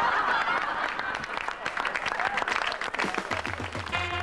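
Audience applauding, a dense patter of clapping. Band music comes in near the end.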